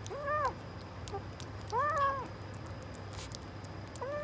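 A two-month-old kitten mewing twice, each a short high call that rises and falls, about a second and a half apart, with faint clicks in between.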